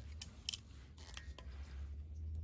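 Light metallic clicks and scrapes of a steel digital caliper being slid and set against a saw's frame, with one sharper click about a quarter of the way in and a few more just past halfway; a low steady hum underneath.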